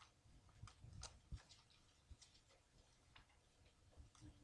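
Near silence, with faint scattered rustles and light ticks of thin Bible pages being turned by hand, most of them in the first second and a half.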